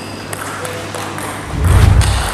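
Scattered light clicks of table-tennis balls around the hall. Near the end a loud, low rumbling swell rises: the sound effect of the channel's logo transition.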